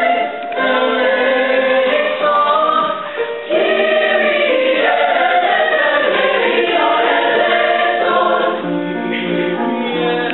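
Mixed choir of male and female voices singing together, with short breaks between phrases about half a second and three seconds in.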